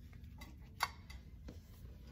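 A few light ticks, with one sharp click a little under a second in, over a low steady hum.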